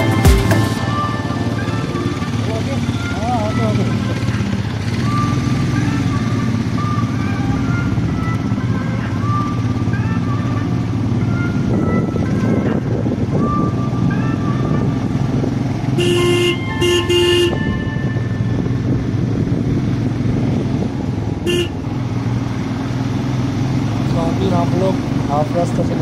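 Motorcycle engine running steadily under road and wind noise while riding. A vehicle horn gives two toots about two-thirds of the way in and one short toot a few seconds later.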